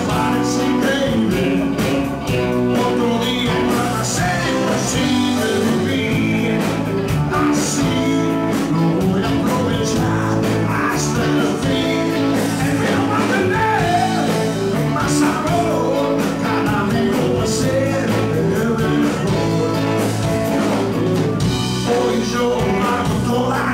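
A rock band playing live: electric guitars and drums, with a male lead voice singing over them.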